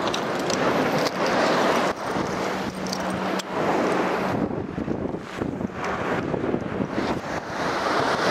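Sea surf breaking and washing over a rocky shore, with wind buffeting the microphone; the noise swells and falls unevenly, with a few sharp clicks.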